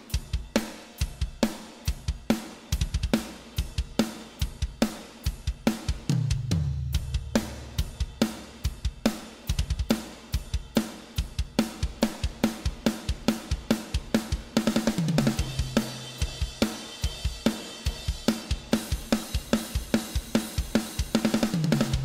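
Roland TD-17KVX2 electronic drum kit triggering EZdrummer 3 Death Metal EZX kit samples, played as a steady beginner's beat of kick, snare, hi-hat and cymbal. It is broken by tom fills that fall in pitch about six seconds in, near fifteen seconds and just before the end.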